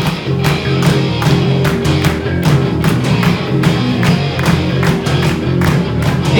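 Live rock band playing a steady instrumental groove: drum kit keeping an even beat over sustained bass and electric guitar, with no vocals.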